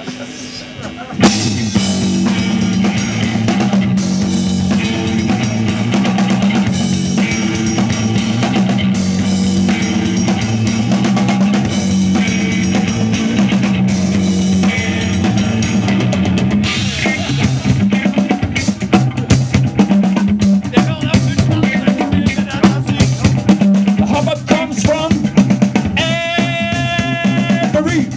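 Live band starting a song about a second in: drum kit and electric guitar playing loudly, with a steady beat.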